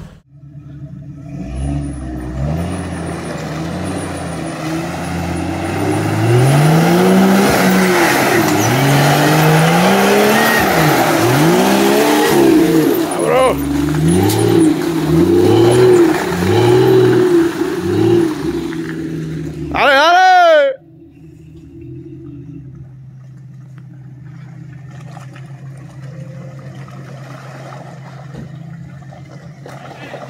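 Lifted 4x4 off-road engine revved hard again and again as the vehicle works through deep mud, with a hiss of spinning tyres and thrown mud over it. About twenty seconds in, a last sharp rev cuts off suddenly, and a quieter engine runs on steadily.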